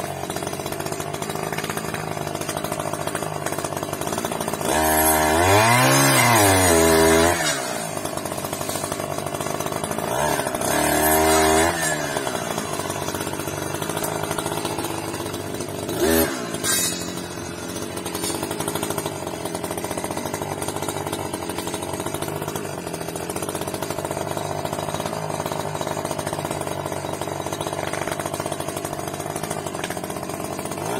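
Husqvarna 555 FX clearing saw's two-stroke engine running at a low steady speed, revved up twice for a couple of seconds each, about five and ten seconds in, as it cuts roadside brush. A short sharp knock comes about sixteen seconds in.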